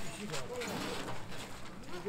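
Voices of a festival crowd and mikoshi bearers calling out in drawn-out, gliding shouts.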